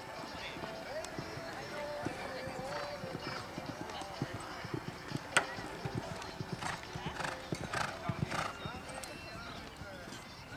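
A horse cantering and jumping a fence on a sand arena: a run of dull hoof thuds, with one sharp knock about five seconds in.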